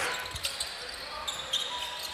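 A basketball being dribbled on a hardwood court: a few dull thuds over a low, even arena murmur.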